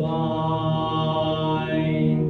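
A young man's singing voice holding one long note, steady in pitch.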